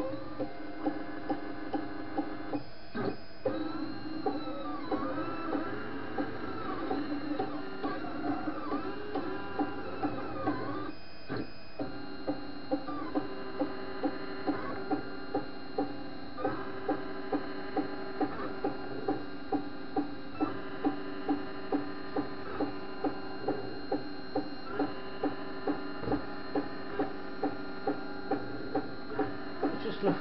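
Anet ET4+ 3D printer's stepper motors whining in steady tones that shift and sweep in pitch, with a regular tick a little more than once a second, while the extruder fails to draw the filament in.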